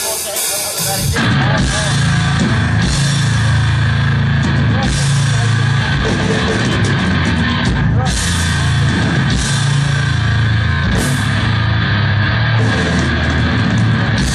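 Heavy metal band playing live and loud: distorted electric guitars, bass and drums, with the full band coming in about a second in.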